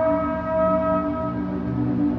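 Muezzin's call to prayer carried over loudspeakers: a long held sung note that fades about one and a half seconds in, with lower held tones sounding underneath.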